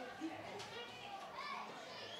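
Faint, distant voices of footballers calling out on the pitch, heard as short scattered shouts over the open stadium's background.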